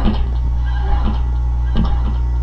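Guitar notes picked one at a time, a new note every half second or so, as a song's intro, over a steady low hum.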